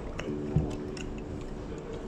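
A man chewing a mouthful of teriyaki chicken, with small wet clicks of the mouth and a soft thud about half a second in.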